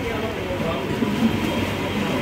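Busy eatery din: indistinct overlapping voices of diners over a steady low hum.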